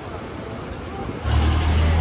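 City street traffic noise, with a low vehicle engine rumble that gets louder about a second in.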